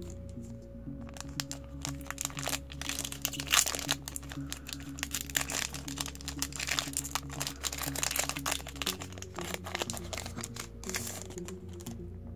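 A trading-card booster pack wrapper crinkling and tearing as it is opened by hand, with a dense run of sharp crackles from about a second in until near the end, loudest about three and a half seconds in. Background music plays underneath.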